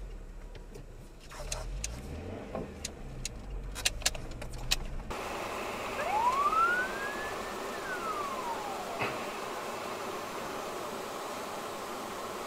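Low car engine idle with scattered sharp clicks, then an abrupt change to steady road noise from a moving car. About six seconds in, one siren wail rises and falls over roughly two seconds.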